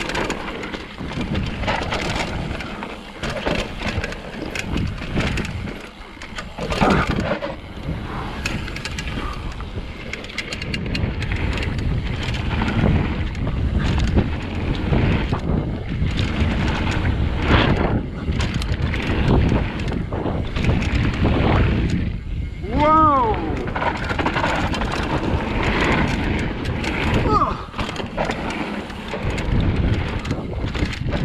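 Mountain bike riding fast down a loose gravel trail: tyres crunching over stones, with the frame and chain rattling over bumps and wind rumbling on the microphone. About three-quarters of the way through comes one short pitched sound that rises and falls.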